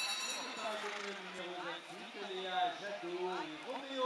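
Background voices talking, a low spread of indistinct speech around the arena, with no clear hoof sounds standing out.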